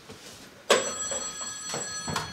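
Telephone bell ringing: one ring that starts suddenly less than a second in and rings on for over a second with a bright, metallic bell tone.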